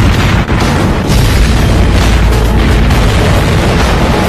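Heavy, continuous booming mixed with music.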